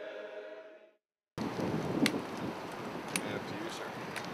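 Men's barbershop chorus holding a final a cappella chord that fades out within the first second. After a brief dead silence, a steady rushing background noise follows, with two faint clicks.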